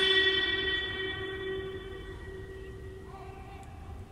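The lingering echo of a long held note of Quran recitation dying away in a huge domed mosque hall. It fades steadily over about three seconds into a low, steady room rumble.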